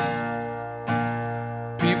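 Acoustic guitar chords strummed about once a second and left to ring, in a pause between sung lines of a slow song played live.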